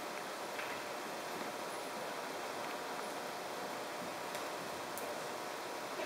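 Steady background noise of a large indoor riding hall, with a few faint clicks.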